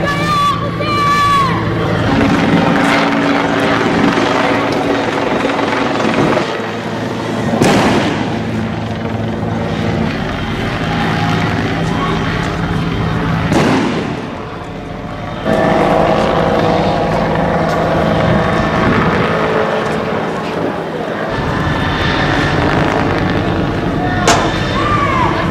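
Steady engine noise from motor vehicles, with voices shouting over it. Two brief sweeping noises come about 8 and 14 seconds in.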